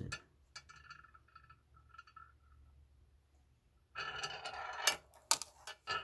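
Compass made of sphere magnets spinning on its big center ball on a marble surface, giving a faint fluttering ring like a spinning coin that dies away. A few seconds later comes a louder rolling scrape of the balls on the stone, then several sharp clicks of the metal magnet balls knocking together.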